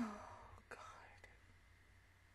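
A woman's soft, breathy vocal sounds close to the microphone: a short hum falling in pitch at the very start, then whisper-like breaths within the first second, fading to quiet room noise.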